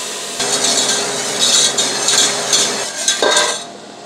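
Butter sizzling as it melts in a hot stainless steel pot while being stirred: the first stage of a roux for béchamel. The hiss fades near the end.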